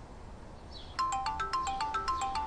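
Mobile phone ringing: a ringtone melody of quick, short, bright notes stepping up and down, starting about a second in.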